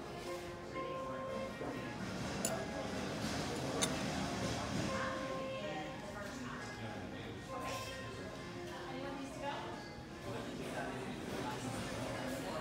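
Restaurant background music with long held notes under a murmur of diners' chatter. Two sharp clinks of cutlery on dishware come about two and a half and four seconds in.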